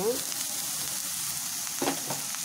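Grated carrot sizzling steadily as it fries in a pan and is stirred, with a brief knock near the end.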